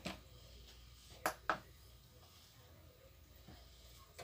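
Two short, light knocks about a quarter second apart a little over a second in, as a digital kitchen scale and a plate are handled and set on a tabletop; otherwise faint room tone.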